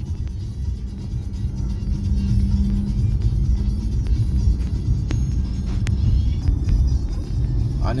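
Car driving along a paved road, heard from inside the cabin: a steady low rumble of engine and tyres, with a steady hum that stops about four seconds in.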